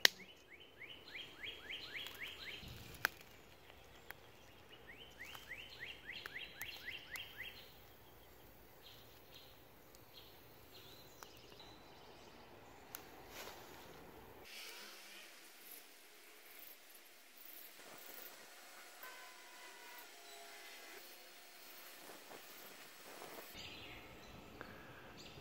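Faint outdoor ambience with a songbird singing two short runs of quick down-slurred notes, about six a second, in the first several seconds. After that only faint background with a few small clicks.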